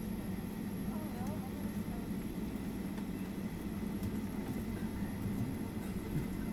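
Steady cabin noise inside a Boeing 757-200 taxiing after landing: the engines at idle and the low hum of the cabin, with no sudden changes.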